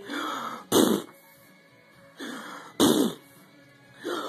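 Two short, sharp coughs about two seconds apart, each coming just after a brief voiced sound, in a back-and-forth coughing game with a baby.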